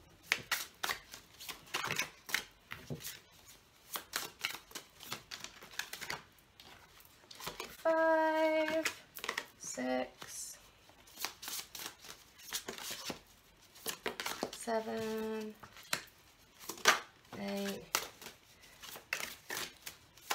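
Hand-shuffling of an oversized tarot deck: a rapid run of soft card slaps and riffling clicks, with a few short vocal sounds in between.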